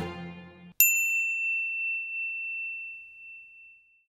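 The tail of background music fading out, then a single bright chime struck once and ringing out, slowly dying away over about three seconds: a transition sting over the channel's logo card.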